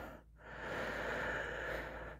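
One long, strained breath lasting about a second and a half, from an astronaut whose suit oxygen is almost depleted.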